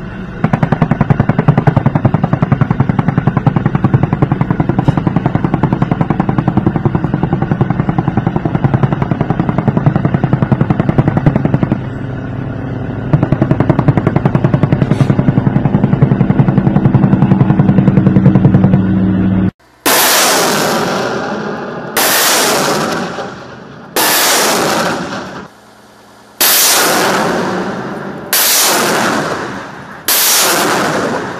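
Sustained rapid automatic gunfire with tracers, continuous for about twenty seconds. Then a truck-mounted rocket launcher fires a salvo: five launches about two seconds apart, each a sharp blast that trails off.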